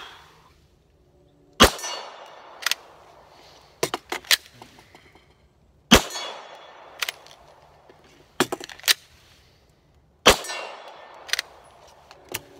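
Glock 19 9mm pistol fired three single shots about four seconds apart, each with a short ring after it. Between the shots come quieter clicks and clacks of a magazine change and the slide being racked: the slide is not locking open on the empty magazine.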